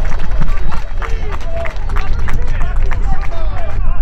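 Voices of football players and onlookers shouting and calling out on the pitch, with scattered short knocks. Underneath runs a constant heavy low rumble on the microphone.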